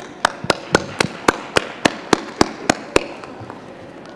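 One person clapping close to a table microphone, about a dozen claps at an even four a second, stopping about three seconds in.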